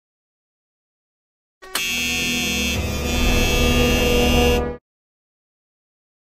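A loud, steady buzzer-like tone about three seconds long, starting about a second and a half in and cutting off suddenly.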